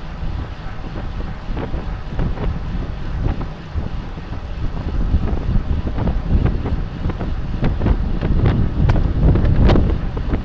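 Wind buffeting the microphone of a bicycle-mounted Cycliq camera at racing speed, over a steady low road rumble, with scattered sharp clicks and rattles that come more often near the end.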